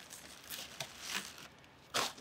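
Faint rustling and crinkling of plastic wrap and cardboard packaging in a few soft bursts as wrapped handlebars are pulled out of a box.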